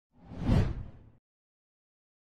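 A single whoosh sound effect with a deep low end, swelling to a peak about half a second in and fading out after about a second.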